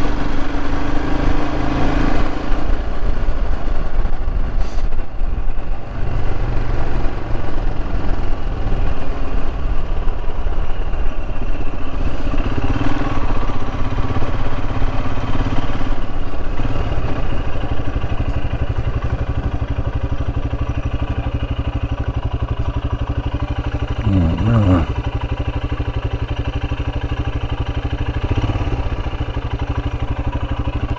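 Royal Enfield Himalayan's single-cylinder engine running while riding, the throttle rising and falling in the first half before settling to a steadier, slightly quieter running. A short wavering sound comes through about three-quarters of the way in.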